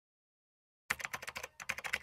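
Silence, then about a second in a rapid run of sharp clicks, a keyboard-typing sound effect.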